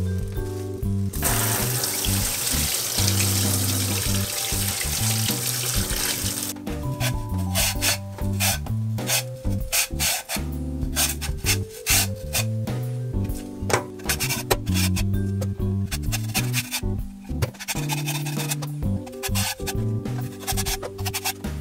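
Tap water running into a stainless-steel sink over a lotus root for about five seconds, then a vegetable peeler scraping the skin off the lotus root in many quick, crisp strokes, over background music.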